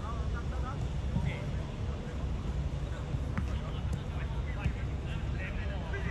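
Scattered shouts and calls of footballers on the pitch, faint against a steady low rumble, with a single sharp knock about three and a half seconds in.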